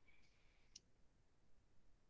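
Near silence. A faint high tone stops with a single faint click a little under a second in.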